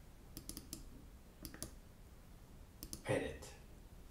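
Computer mouse clicking: several sharp clicks, mostly in quick pairs like double-clicks, during the first three seconds.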